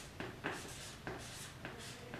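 Felt-tip marker writing on flip-chart paper: about half a dozen short, faint strokes as a word is written.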